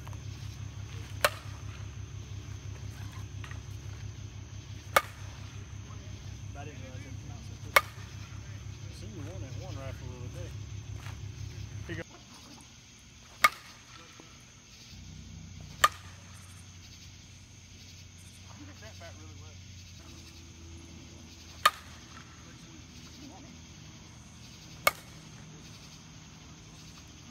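Two-piece carbon composite slowpitch softball bat, the 2020 ONYX Ignite, hitting pitched softballs: seven sharp cracks of contact, each a few seconds apart.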